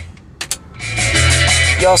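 Music playing on a car stereo cuts out abruptly, two sharp clicks sound about half a second in, and the music comes back a little before the one-second mark. This is the head unit's mute button being used.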